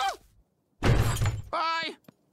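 A pitched wailing voice cuts off, and after a short silence comes a loud crash-like burst of noise lasting under a second. Then a brief pitched cry falls away at its end.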